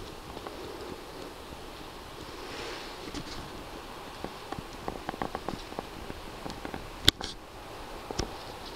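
Outdoor ambience from a small paddled boat drifting along a bog shore: a steady light hiss of wind, with scattered small clicks and taps of water and boat through the second half and one sharp knock about seven seconds in.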